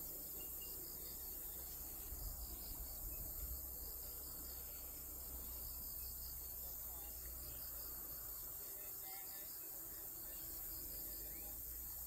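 Insects chirping and trilling steadily in a high, evenly pulsing chorus, over a low rumble.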